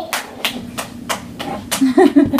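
A toddler clapping her hands repeatedly, about four claps a second.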